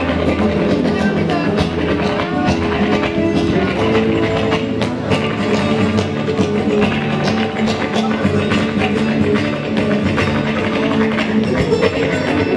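Flamenco guajira music with guitar, held pitched lines running through it and frequent sharp taps across the rhythm.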